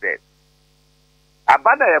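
A man's voice ends a word at the start and begins the phrase "was called to speak" about one and a half seconds in. In the pause between, only a faint steady electrical hum is heard.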